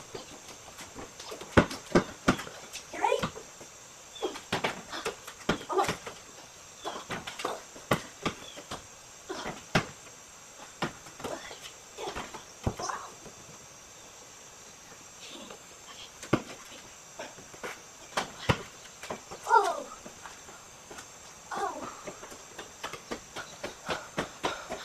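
Basketball bouncing on a concrete driveway and being shot at a hoop: a string of short, sharp thuds at irregular intervals, heard from some distance.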